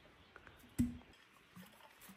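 Earthenware pickling jar held upside down and knocked as fermented fish in rice flour is worked out of it: faint scrapes and ticks, and one short dull thud with a low ring about a second in.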